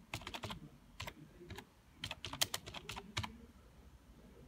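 Computer keyboard being typed on: quick runs of key clicks with short pauses between them.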